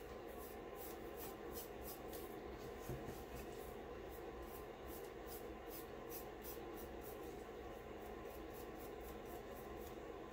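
Paintbrush spreading glue over a glitter-coated cup: faint brushing strokes repeating about three times a second.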